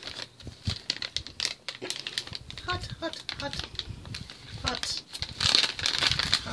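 Plastic and foil MRE entree pouches crinkling and rustling as they are handled, with a run of irregular clicks and crackles.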